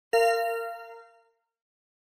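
A single bell-like chime struck once and ringing out over about a second: the cue marking the end of one dialogue segment and the start of the interpreting turn.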